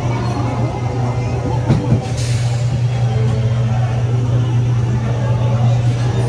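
Electric dark-ride vehicle rolling along its track with a steady low hum, and a single knock a little under two seconds in.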